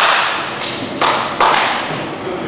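Sharp thuds and slaps of bare feet and bodies on foam grappling mats during a standing clinch and scramble: three sudden hits, one at the start and two more about a second in.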